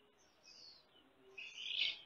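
Birds calling faintly: a short falling high call about half a second in, then a louder, higher chirping near the end.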